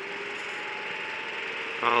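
Go-kart's gas engine running steadily at speed, with a steady hiss of wind and road noise.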